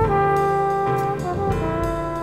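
Big band jazz with the brass section of trumpets and trombones playing a long held chord that moves to a new chord about a second and a half in.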